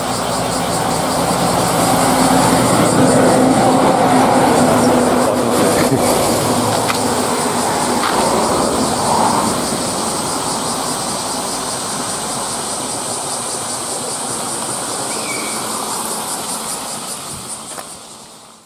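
Heavy road traffic: a large vehicle passing, its noise swelling over the first few seconds and then slowly fading, with a steady engine hum beneath.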